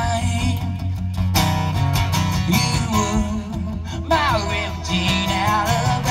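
Live solo performance of a rock song on an amplified acoustic guitar, strummed steadily, with a man singing over it from about four seconds in.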